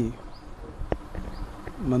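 A faint low buzz in a pause between a man's spoken phrases, with one sharp click about a second in.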